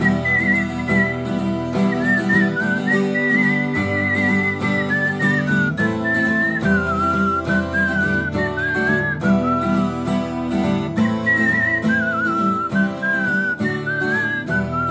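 A man whistling a melody over his own strummed acoustic guitar. The whistle is a single clear line that sits higher in the first half and moves lower later on, over steady chord strumming.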